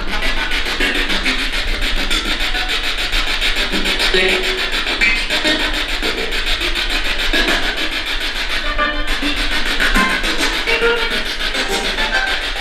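Spirit box radio scanning through stations: continuous, rapidly chopped static with brief snatches of voices and music.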